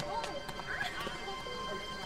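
Background music with steady sustained tones, over a few sharp taps of a basketball bouncing on paving stones in the first second.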